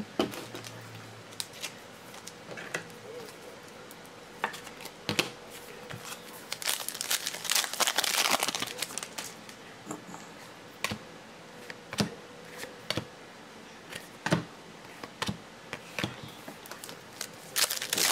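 Foil wrapper of a 2016 Panini Select football pack crinkling as it is torn open, loudest in a dense stretch about seven to nine seconds in, amid light clicks and taps of trading cards being handled.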